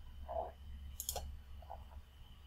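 A single computer mouse click, press and release close together, about a second in, over a faint low hum.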